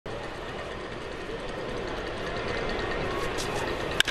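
Baseball stadium crowd murmur, a steady mass of voices that grows slightly louder as the pitch is delivered.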